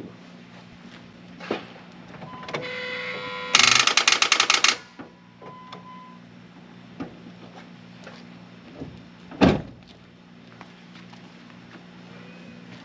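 A truck's starter tried on a failing battery: a warning tone, then about a second of rapid chattering, roughly twelve clicks a second, as the battery cannot turn the engine over properly. A single thump about nine and a half seconds in.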